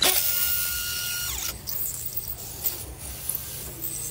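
Cordless drill spinning a wooden stock through a steel dowel plate to shave it into a round dowel. A steady high whine over a hiss falls away about a second and a half in, leaving a softer, even hiss.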